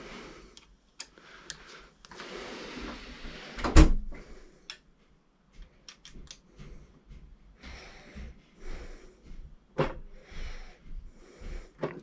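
Allen key working the bolts of a Monorim scooter suspension: scattered metal clicks and knocks, the loudest a single knock about four seconds in, with stretches of handling noise between.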